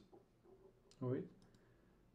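A few faint, sharp clicks from working a computer, against a quiet room, with a short spoken 'okay' about a second in.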